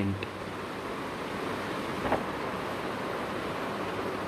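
Steady hiss of background noise, with one faint, brief sound about two seconds in.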